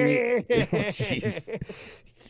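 A man laughing, in short repeated voiced bursts that tail off near the end.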